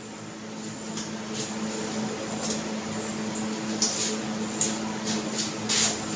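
Hot desi ghee sizzling softly in a kadhai, a steady hiss broken by a few scattered small crackles and pops.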